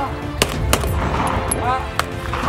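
Semi-automatic pistol firing: two shots about a third of a second apart, about half a second in, and another right at the end.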